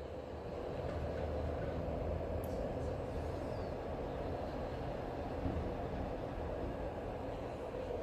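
Steady low background rumble and hum of room noise, with a couple of faint clicks about two and a half seconds in.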